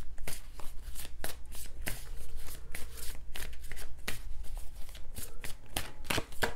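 A deck of tarot cards being shuffled by hand: a quick, irregular run of soft card clicks and slaps, several a second.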